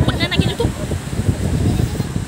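Several people chatting, with a short burst of laughter in the first half second.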